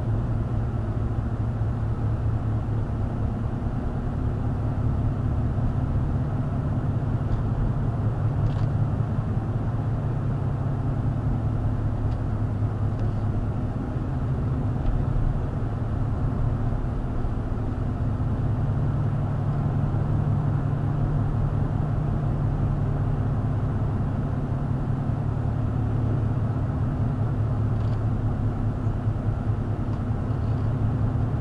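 Car being driven at about 25 mph, heard from inside the cabin: a steady low rumble of engine and road noise that rises and falls a little with speed.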